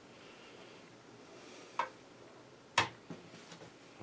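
A few small clicks from handling a battery-powered device that keeps switching itself off, the sharpest just before three seconds in, then a few faint ticks, over quiet room tone.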